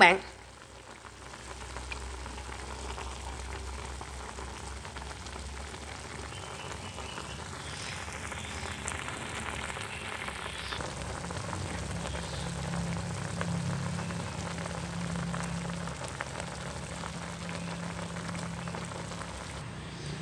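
A pot of chicken braising in sauce, simmering with a steady bubbling sizzle. A low hum joins about halfway through.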